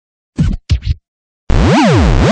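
Record-scratch sound effect: two short scratch strokes, then after a brief gap a longer scratch whose pitch sweeps up and then back down.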